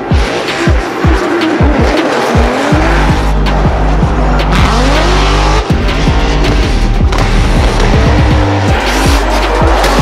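Drift cars' engines revving up and down repeatedly with tyres squealing through sideways slides, over background music with steady held bass notes.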